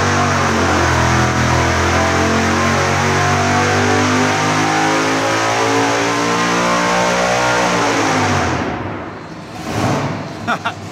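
Supercharged 555-cubic-inch big-block Chevrolet V8, with an 8-71 blower and twin Holley Dominator carburetors, on a full-throttle dyno pull on gasoline at about nine and a half psi of boost. Its note climbs steadily with rpm for about eight seconds, then drops away and fades as the pull ends.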